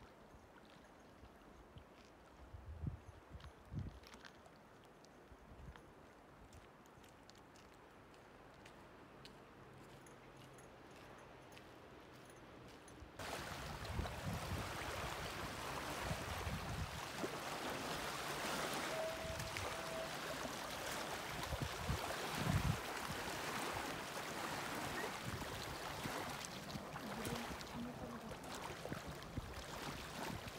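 Wind and water at a lakeshore, faint at first with a few low buffets of wind on the microphone; about halfway through it cuts abruptly to a louder, steady rush of wind and water.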